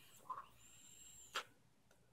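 Near silence: room tone with a faint short sound about a third of a second in and a soft click just before halfway.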